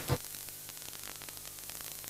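Faint steady hiss and electrical hum of the broadcast audio with no programme sound, broken by a short click just after the start.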